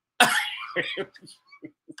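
A man bursts out laughing: one loud outburst, then a run of short breathy pulses that trail off.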